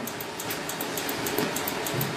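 Steady background hiss and room tone of a lecture recording, with faint rapid ticking very high in pitch.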